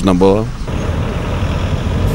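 A man's voice trailing off about half a second in, then steady road traffic noise.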